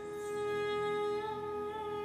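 Indian classical dance music: a woman's voice holds one long, steady note, swelling slightly about half a second in.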